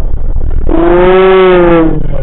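Low road and engine rumble of a car, slowed to half speed. About two-thirds of a second in comes one long, slightly arching vocal cry, lasting just over a second and lowered by the slow motion.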